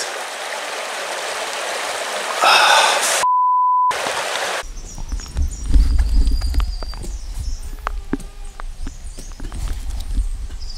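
Wind rushing on the microphone and a short muffled word, then a single half-second 1 kHz bleep with all other sound muted, as used to censor a swear word. After a cut there is a low rumble with scattered sharp clicks and knocks.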